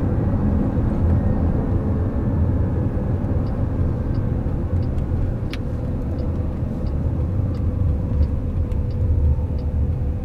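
Road and tyre noise inside the cabin of a moving Chrysler Pacifica minivan, a steady low rumble. From about three and a half seconds in, a faint regular ticking about one and a half times a second: the turn-signal indicator for the coming left turn.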